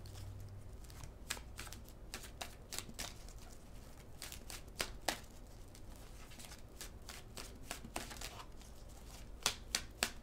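A tarot deck being shuffled by hand overhand-style: a faint, irregular patter of soft card clicks and slides, with a few sharper snaps about five seconds in and near the end.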